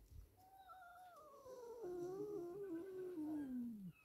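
Domestic tomcat's single long, wavering yowl, starting higher and sliding down in pitch until it cuts off near the end. It is a threat call in a quarrel between two male cats.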